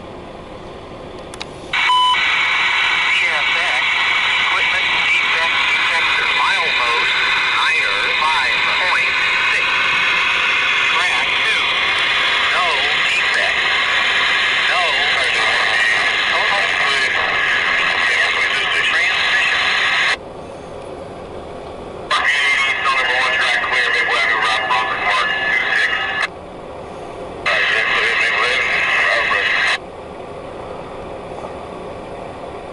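Railroad radio transmissions over a scanner, thin and hissy: one long key-up of about eighteen seconds, then two short ones, each cutting in and out abruptly.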